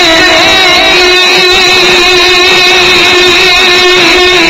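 A man's voice holding a long sung note in a naat recitation, steady in pitch with slight wavering, unaccompanied by instruments.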